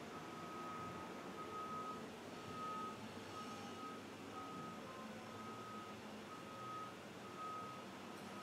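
Faint electronic beeping: a single high tone repeating about once a second over quiet room tone.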